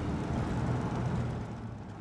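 1955 Jaguar XK140's straight-six running steadily at cruise, heard from the open cockpit along with road and wind noise; it eases off a little near the end.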